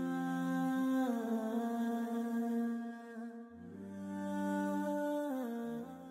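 Wordless humming voices holding long, layered notes that shift in pitch every couple of seconds, without instruments, fading out at the end.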